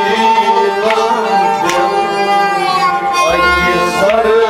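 Kashmiri sarangi bowed in an instrumental passage of Kashmiri Sufi music, its melody gliding between held notes. A few drum strokes sound over it, with a deeper drum beat about three seconds in.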